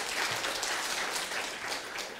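Congregation applauding, a brief spatter of clapping.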